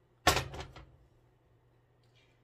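A glass mixing bowl set down on the stovetop: one sharp clatter about a quarter second in that rings briefly and dies away.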